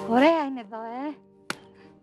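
A woman's playful voiced cries, two calls that swoop up and down in pitch within the first second, with no words, as faint music fades out; a single sharp click comes about one and a half seconds in.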